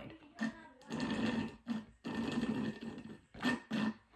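Drinking through a straw from a nearly empty plastic cup of iced drink: several short, noisy slurps as the straw draws air and the last of the liquid.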